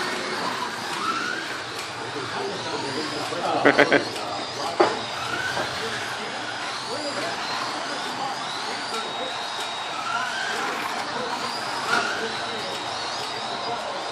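Electric slot car motors whining as several cars lap a multi-lane slot car track, the pitch rising and falling over and over as the cars speed up on the straights and slow for the corners. A brief louder burst stands out about four seconds in.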